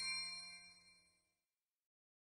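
Ringing tail of a bright chime sound effect, fading out about a second in, followed by silence.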